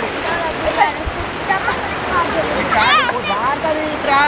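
Muddy floodwater rushing steadily around people wading through it, with high-pitched shouting voices of children over the top, loudest about three seconds in.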